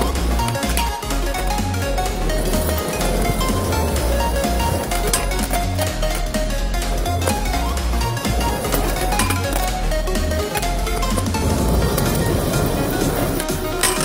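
Background music with a heavy, regular bass beat.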